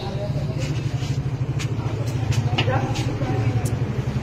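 A steady low rumble with faint, muffled voices and a few scattered clicks.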